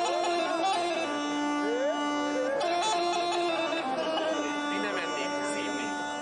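Bulgarian bagpipe (gaida) playing an ornamented melody over a steady drone, the unaccompanied instrumental opening before the singer comes in.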